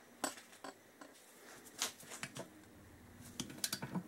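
Ratchet wrench and stud-removal tool on a cylinder stud: scattered sharp metallic clicks, with a quick run of clicks near the end, as the tool grips and works the stud loose.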